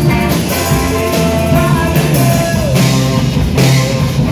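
Live rock band playing: electric guitars over a drum kit, with repeated cymbal crashes.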